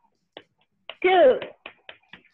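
A few sharp hand claps, irregularly spaced, with three quick ones near the end, and a short vocal exclamation falling in pitch about a second in.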